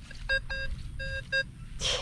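Nokta Double Score metal detector giving a choppy run of short, same-pitched target beeps as the coil sweeps over a target, with a brief hiss near the end. The signal is erratic: the target ID and depth readings are jumping around, and it is either super close or super far.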